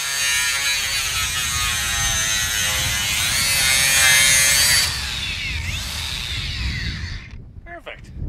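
DeWALT cordless angle grinder cutting through a Chevy Equinox's sheet-metal roof: a steady, high-pitched whine with grinding. About five seconds in the pitch slides as the disc comes off the cut and winds down, stopping shortly before the end.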